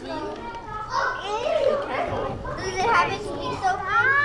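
Several young children talking over one another in indistinct chatter.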